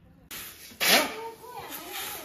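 A steel shovel scooping wheat grain off concrete and tipping it into a plastic bucket, with a loud rushing scrape about a second in. A voice is heard under it.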